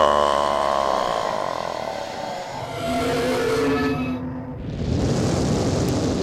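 A Godzilla-style monster roar that fades away over the first second or so. Near the end comes a loud rushing noise.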